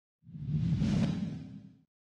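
A whoosh sound effect with a deep low rumble under it, swelling in quickly, then fading out and stopping near the end.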